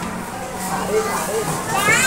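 Young children's voices and chatter in a room, with a child's quick high-pitched rising squeal near the end, over a steady low hum.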